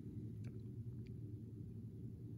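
Steady low room hum with two faint clicks, about half a second and a second in, as the sliding mount holding a pith ball is pushed along the metal track of a Coulomb balance.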